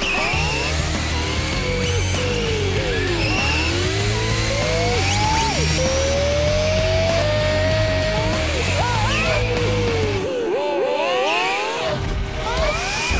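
Electric motors of remote-control toy cars running on hydrogen fuel cells, whining and gliding up and down in pitch as the cars speed up and slow down, several at once near the end. Background music with a steady low beat plays under them and drops out about ten seconds in.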